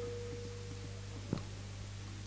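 The ring of a hand drum's last stroke dying away over the first second, over a steady low mains hum from the sound system, with one faint click about 1.3 seconds in.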